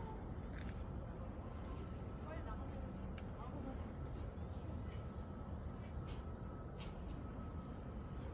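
Quiet outdoor valley ambience: a faint steady low rumble with a few scattered faint clicks, and a brief faint voice-like sound about two and a half seconds in.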